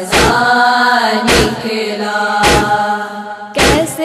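Female voices chanting a Shia noha lament, holding out the end of a line, over a steady matam beat: a deep chest-beating thud about every 1.2 seconds, four times.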